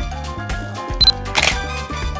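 Background music with a steady beat; about a second in, a camera's short high beep is followed by a shutter click.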